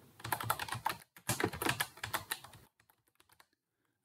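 Computer keyboard being typed on: a quick run of keystrokes for about two and a half seconds, then a few faint taps.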